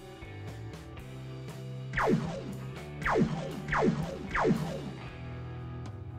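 Four cartoon laser-blast sound effects, each a quick zap falling steeply in pitch, between about two and four and a half seconds in. Guitar background music plays underneath.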